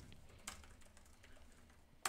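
Faint, scattered clicks of typing on a laptop keyboard, the clearest about half a second in, over near-silent room tone.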